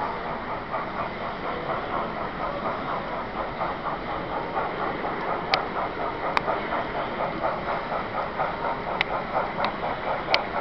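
Model steam locomotive running along a layout, with a quick, even rhythmic beat and a few sharp clicks in the second half.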